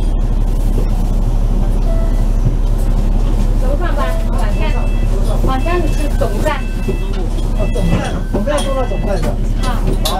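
A bus engine idling steadily, heard from inside the passenger cabin while the bus stands at a stop. Passengers' voices come in from about four seconds in.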